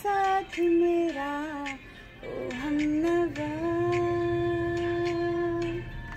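A woman singing a slow melody on her own, without accompaniment, moving between held notes and ending on one long note that stops shortly before the end.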